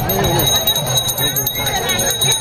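A high electronic beeping tone, steady in pitch and pulsing rapidly like an alarm, over crowd voices and a low steady hum.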